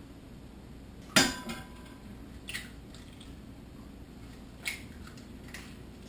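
Cookware handled on a stovetop: one sharp metallic clink with a short ring about a second in, then two fainter taps, over a quiet steady room hum.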